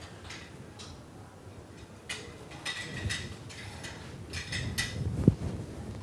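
Scattered small clicks and rustles of handling noise in a room, with one sharp thump a little after five seconds in.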